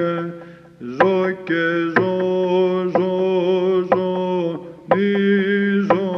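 Solo male voice chanting Byzantine parallagi in plagal first mode, singing the note names as syllables. Each note is held about a second with ornamented, wavering pitch, after a short breath pause near the start.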